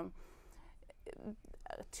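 A woman's voice in a pause between words: a breath and faint, half-voiced murmurs before she speaks again.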